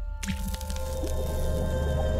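Logo-sting music with a liquid drip-and-splat sound effect over a deep held low tone. It starts abruptly, and the splash comes about half a second in.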